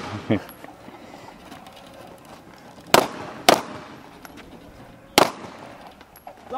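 Three gunshots: two about half a second apart, then a third roughly two seconds later.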